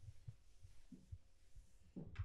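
Near silence: room tone with a few faint, dull low thumps.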